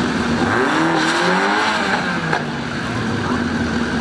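Cars' engines revving hard at a drag-strip start line, with one engine's pitch rising and falling about a second in over loud, dense engine and exhaust noise.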